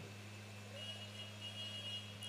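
Faint steady low electrical hum, with a faint steady high-pitched tone coming in just under a second in.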